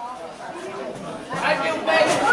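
Spectators' overlapping voices chattering and calling out in a hall, quieter at first and louder from a little past halfway.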